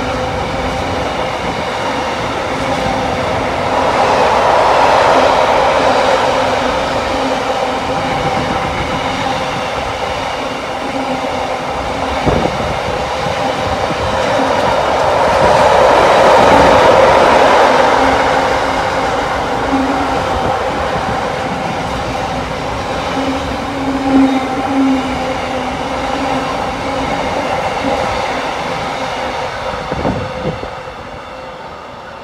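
Long container freight train passing close by, a continuous rumble of wagon wheels on the rails that swells louder twice, with a few sharp clicks.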